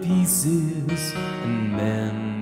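A man singing to his own digital piano accompaniment: the sung line, with two sharp 's' sounds, fills about the first second, then held piano notes ring on under a sustained tone.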